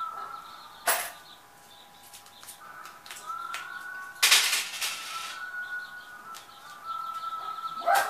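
A kitten playing with a dangled plastic stick toy against a cabinet: a sharp knock about a second in and light taps, then a brief loud rustling scrape about four seconds in, over a faint steady high tone.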